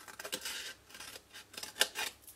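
Small scissors snipping through patterned paper, cutting up a score line: a run of short snips, the loudest just before the end.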